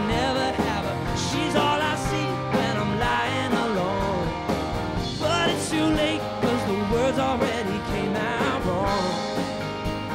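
Live band playing a pop song: a male voice singing over strummed acoustic guitar and a steady drum beat.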